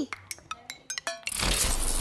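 A few faint, sharp clicks, then about a second in a loud, noisy whoosh swells up: an editing transition sound effect.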